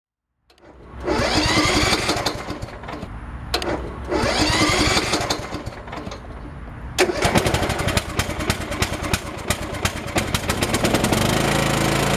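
Riding lawn mower engine cranked twice by its electric starter, the starter whine rising as it spins up, then catching about seven seconds in and running with a fast, even firing beat. It is being started off a portable jump starter in place of its dead lead-acid battery.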